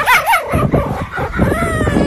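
Red fox kit calling in angry protest at being handled: two quick rising-and-falling squeals right at the start, then shorter whining calls and a longer held one near the end. Low handling thumps run under the calls.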